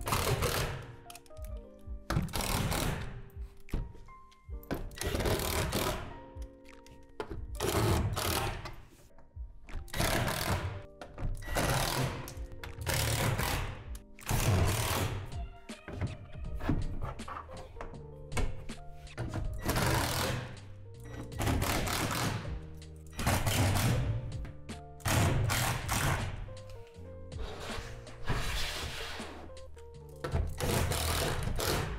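Cordless drill/driver driving screws through the plastic roof panels into the metal truss, in short bursts of a second or so repeated every one to two seconds, over steady background music.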